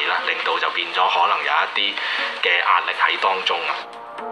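Speech only: a man speaking Chinese, the voice thin and band-limited like a broadcast feed.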